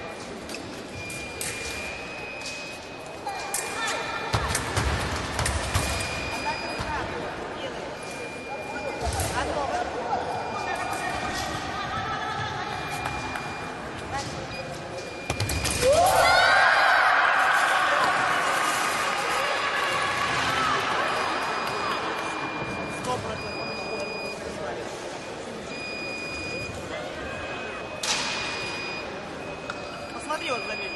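Fencing bout on a piste: footwork stamps and thuds with scattered clicks of blade contact. About halfway through, a touch lands and a fencer lets out a loud rising yell that fades away over several seconds.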